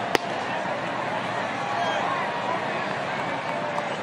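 Steady ballpark crowd noise. Just after the start there is one sharp pop of a pitched ball hitting the catcher's mitt.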